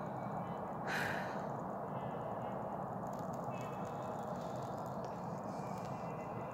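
A man's short breath about a second in, over a steady background hiss.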